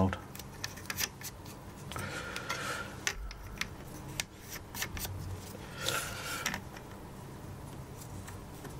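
White plastic actuator locking collars being screwed by hand onto the valve tops of an Uponor underfloor heating manifold: small clicks and ticks of plastic on metal, with two short rasping scrapes, about two seconds in and about six seconds in.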